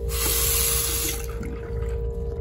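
A hiss of running water in restroom plumbing for about a second, then it cuts off, over a steady hum.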